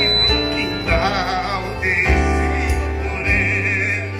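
Live band music: a voice sings long, wavering held notes over sustained keyboard and bass.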